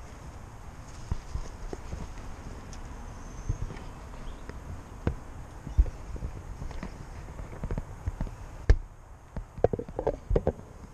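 Footsteps and irregular knocks of a handheld camera being moved about, under a low wind rumble on the microphone. A quick run of sharp taps near the end as the camera is pressed against a window's glass and frame.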